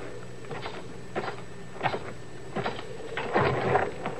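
Radio-drama sound-effect footsteps: a few soft steps about two-thirds of a second apart, over a faint steady background, with a brief murmured voice near the end.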